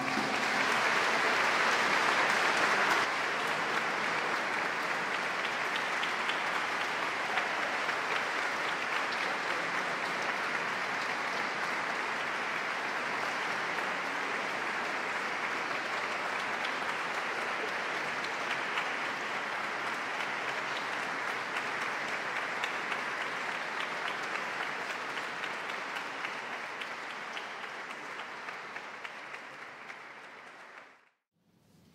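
Concert audience applauding at the end of an orchestral piece, a dense, even clapping. It is loudest in the first three seconds, then holds steady and slowly fades toward the end.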